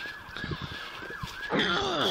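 Emergency-vehicle siren with a quick rising and falling sweep that repeats several times a second. About one and a half seconds in, a louder pitched sound falling in pitch comes in over it.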